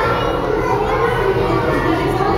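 A steady babble of many children's voices chattering and calling out at once, overlapping so that no single speaker stands out.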